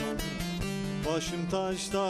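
Bağlama (long-necked Turkish saz) picked in a folk-song melody, with a man's voice holding a wavering sung note from about a second in.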